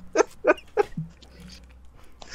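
A person's wheezing laughter: a run of short, breathy, squeaky gasps about three a second that dies away about a second in.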